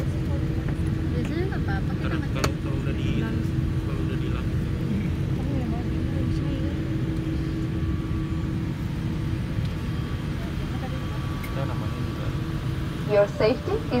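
Steady low rumble of a Boeing 787-8's engines and airframe heard inside the passenger cabin as the airliner rolls along the ground, with a steady hum that stops about eight or nine seconds in.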